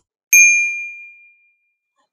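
A single high notification-bell ding sound effect from a subscribe-button animation, struck about a third of a second in and fading away over about a second.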